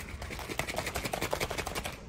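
A rapid run of small crackles and clicks, about a dozen a second, from things being handled at close range.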